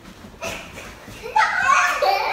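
Girls scuffling on a leather sofa: a short rustling thump about half a second in, then a girl's loud, high-pitched shout near the end.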